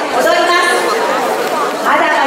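Only speech: a woman talking into a handheld microphone, amplified over the hall's sound system.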